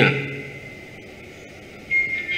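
A pause in a man's speech, filled with low room noise through the microphones. Near the end a single steady high tone comes in suddenly, like a beep.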